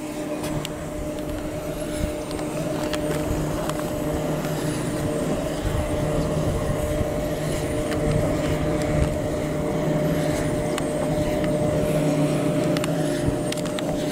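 Wind turbine running, heard from the base of its tower: a steady mechanical hum made of several held tones over a low rumble. A faint high falling whistle repeats about every two seconds.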